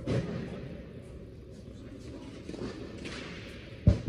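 Two dull thumps ringing in a large indoor tennis hall, one just after the start and a louder, deeper one near the end.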